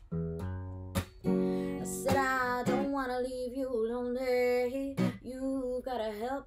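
Acoustic guitar strummed in blues chords, about one strum a second. From about two seconds in, a woman's voice sings long held notes over it.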